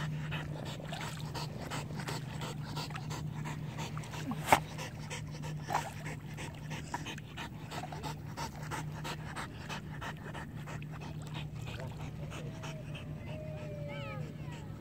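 A swimming dog panting rapidly and evenly, its mouth open just above the water. A single sharp click about four and a half seconds in, and a short wavering whine near the end.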